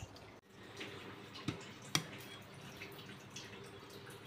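Faint light clicks and soft wet ticks of eating from a plate, over a quiet room with a faint steady hum.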